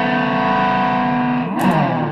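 Electric guitar, a Gibson Les Paul Studio played through a pedalboard into a Fender Supersonic amp and 2x12 cabinet. A held chord rings for about a second and a half, then the pitch slides near the end as the note fades.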